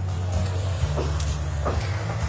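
Drum concrete mixer running with a batch of concrete (water, sand, stone and cement) turning inside, a steady low drone.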